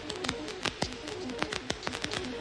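Old wartime radio broadcast recording between two announcements: dense crackle of the worn recording over faint music notes.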